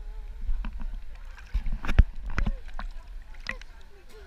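Lagoon water sloshing and lapping against an action camera held at the surface, with low rumble and a cluster of sharp splashes around the middle. Far-off voices of other swimmers.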